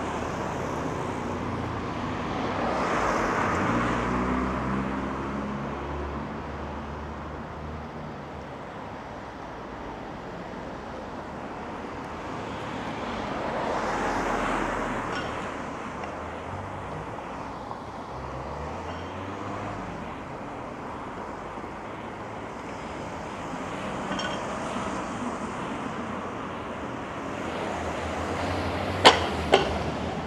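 Cars driving past on a street over a steady traffic hum, with two louder pass-bys that swell and fade about 3 seconds in and about 14 seconds in. Near the end come two sharp clicks about half a second apart.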